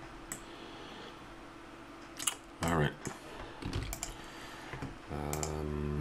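A few scattered clicks of a computer keyboard and mouse. A man's voice makes a brief sound a little before the middle, then a held, steady-pitched vocal sound near the end.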